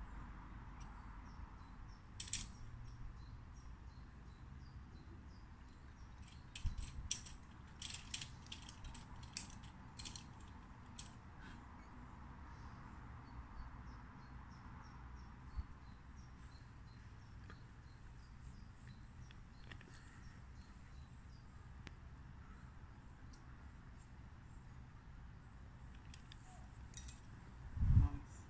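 Faint clicks and light metallic rattles of climbing gear, carabiners and rope, coming in a cluster about a quarter to a third of the way in and a few more near the end, over a low steady rumble of wind.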